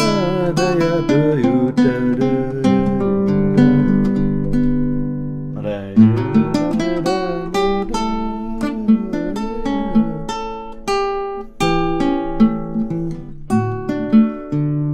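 Nylon-string classical guitar played fingerstyle: chords with a moving melody line and short scale runs over a baroque chaconne progression, with a brief break about five and a half seconds in. The phrase ends on an imperfect cadence, with the F-sharp rather than the D on top.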